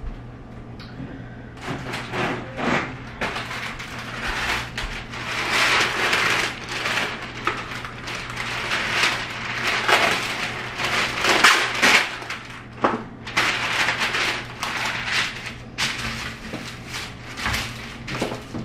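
A sheet of parchment paper being handled and crinkled, rustling in a long run of irregular bursts, then smoothed down onto a metal sheet pan near the end.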